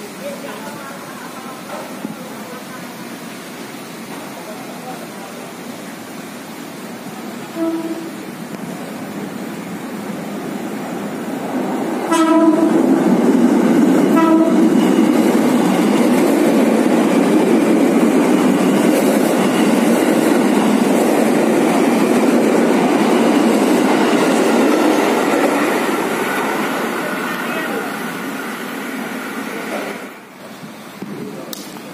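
Electric commuter train (KRL multiple unit) sounding short horn blasts, one about a quarter of the way in and two more as it arrives, then passing close by. Its wheels and running gear are loud for about fifteen seconds and fade off near the end.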